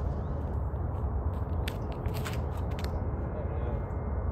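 Wind buffeting the microphone with a steady low rumble, and a few short clicks and scuffs around the middle as a disc golfer runs up and throws a drive from the concrete tee pad.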